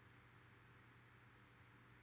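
Near silence: faint steady hiss and low hum from an air conditioner and fan running in the room.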